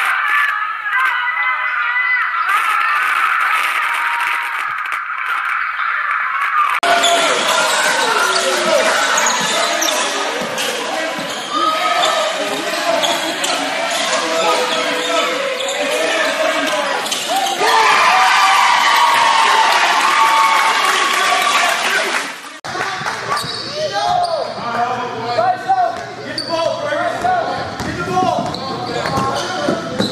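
Game sound from basketball games in gyms: crowd voices and shouts with a basketball bouncing. The sound changes abruptly twice, about 7 and 23 seconds in. The first stretch is thin and muffled, recorded off a screen playing a livestream.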